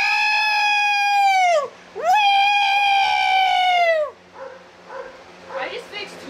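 A woman's voice giving two long, high-pitched held cries, each about two seconds, the pitch dropping as each one ends. Quieter talk follows.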